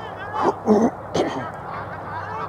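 Two short, loud shouts from a person close to the microphone, over a background of murmuring voices.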